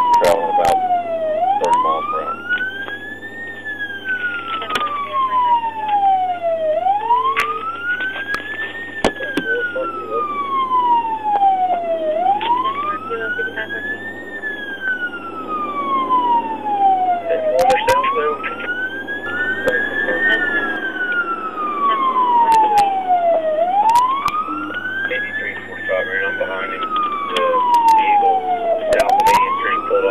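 Police patrol car siren in wail mode, heard from inside the car. It rises quickly and falls more slowly, over and over, one cycle about every five and a half seconds.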